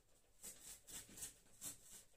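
Plastic Makedo safe-saw sawing through corrugated cardboard along a line pre-scored with the roller: a few faint strokes, about two a second.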